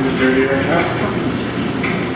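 A person's voice speaking briefly over a steady background noise.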